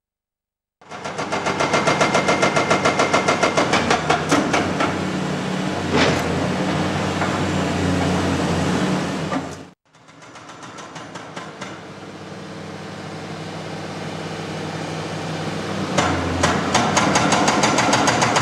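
Excavator-mounted Indeco hydraulic breaker hammering compact rock at a tunnel face: rapid, regular blows over the excavator's steady diesel engine. The hammering starts about a second in, cuts out for a moment just before halfway, then resumes quieter and grows louder toward the end.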